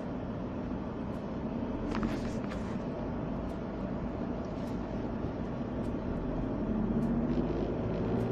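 Steady car cabin noise, the engine and road rumble heard from inside the car, growing slightly louder near the end, with a few faint clicks.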